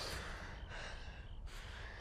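A young man crying quietly, drawing in shaky, gasping breaths and sighing out.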